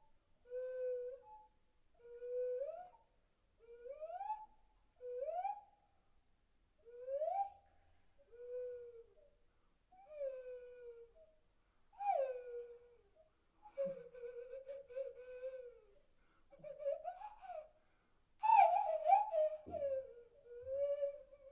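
A slow solo melody of separate sliding notes, each about a second long with short gaps between, many gliding upward, with no accompaniment. A louder, fuller phrase comes near the end.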